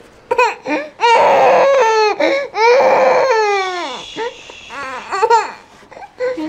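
Tired toddler crying: a few short cries, then long wailing cries about one and three seconds in that fall in pitch, growing quieter toward the end.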